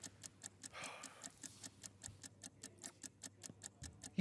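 Faint, rapid, even ticking of a countdown-clock sound effect, several ticks a second.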